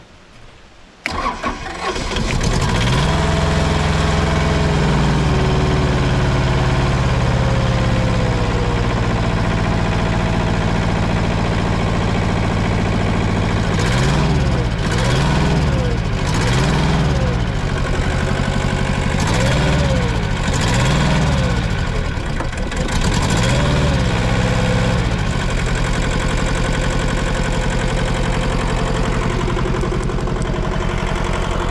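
The diesel engine of an old IHI excavator starts about a second in and settles to a steady idle. It is then revved up and down about six times before dropping back to idle. This is the engine starting and taking throttle after repair of a no-start fault and its accelerator wire.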